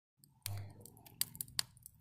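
Small wood fire crackling in a brick fire pit: a few sharp pops between about one and two seconds in, after a brief low rumble near the start.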